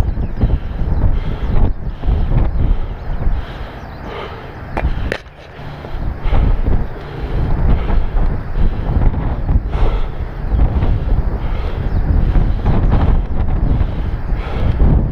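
Wind buffeting the microphone of a point-of-view camera in gusts, a loud rumble that eases briefly near the middle. A couple of sharp clicks come about five seconds in.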